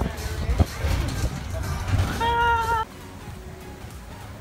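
Inside a moving shuttle bus: the bus's low rumble, with a short, steady pitched tone lasting about half a second just after two seconds in. The sound drops off suddenly near the three-second mark to a quieter, even outdoor background.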